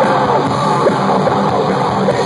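Live heavy metal band playing loud, with distorted electric guitars, drums and shouted vocals, heard from the audience.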